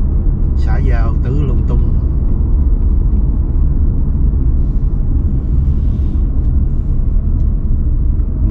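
Steady low road and engine rumble of a car driving on a freeway. A short vocal sound comes from the driver about a second in.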